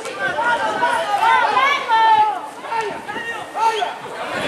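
Several voices shouting and calling over one another during football play: players and onlookers calling out as the ball is dribbled up the touchline.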